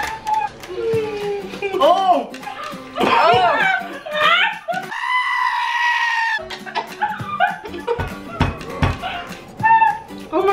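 A goat's long, human-like scream, inserted as a meme sound effect, about five seconds in and lasting about a second and a half.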